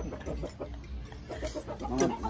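Chicken clucking, a run of short, quiet clucks.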